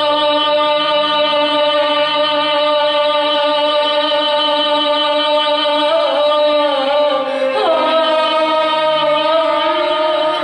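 A female singer holds long sustained notes over a string orchestra in classical Arabic style, with ornamental turns in the melody about six seconds in and again a moment later.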